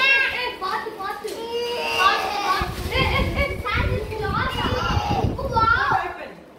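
Several children talking and exclaiming excitedly over one another, with a low rumble underneath from about halfway on.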